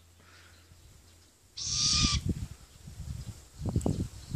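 Hybrid great grey owl × brown wood owl giving one harsh, hissing call of under a second, about a second and a half in. Low thumps follow near the end.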